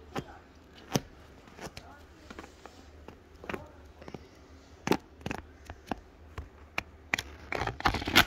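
Irregular sharp clicks and paper rustling as the pages of a thick paperback book are handled and flipped.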